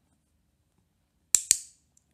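Two sharp, loud clicks in quick succession, about a sixth of a second apart, a little over a second in.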